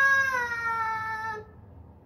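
A young girl's long, high-pitched vocal cry, a held wail that sounds like a cat's meow, dipping slightly in pitch and cutting off about one and a half seconds in.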